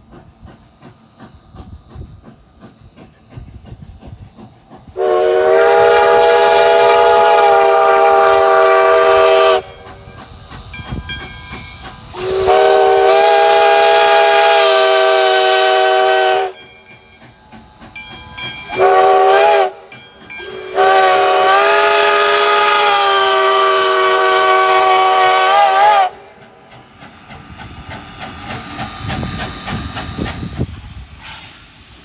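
Steam whistle of 2-8-0 Consolidation locomotive No. 93 blowing four blasts, long, long, short, long: the grade-crossing signal. Steam hiss and running noise fill the gaps and swell near the end as the engine draws close.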